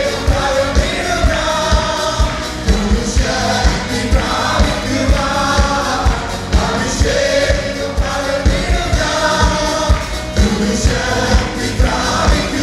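Voices singing a Malayalam worship song together, accompanied by a Yamaha electronic keyboard with a steady drum beat.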